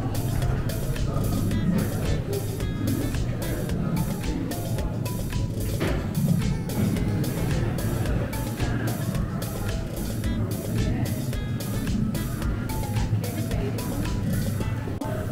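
Themed ride-queue background audio: music over a steady low rumble of machinery, with a quick even pulse of about three to four beats a second.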